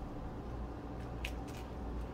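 Quiet handling of wooden fruit skewers in a pineapple base, with a few faint short clicks about a second in, over a steady low hum.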